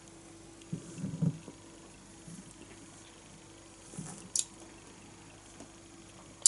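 A man gulping beer from a glass: a few swallows about a second in and another near four seconds, then a single sharp click. A faint steady hum runs underneath.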